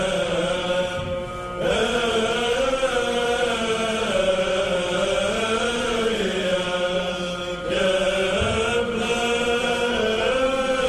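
Male monastic choir chanting Byzantine psalmody: a melody line bends and moves over a steady held low drone (the ison). The sound thins briefly twice, about a second in and again near eight seconds.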